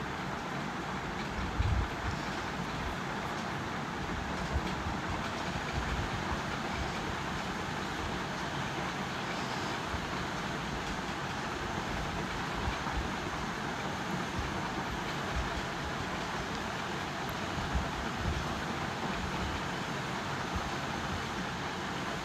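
Steady rushing background noise with a low rumble, and a few soft low thumps.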